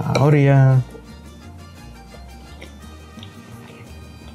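A man's long, steady 'mmm' of enjoyment while tasting food, lasting under a second, then soft background music.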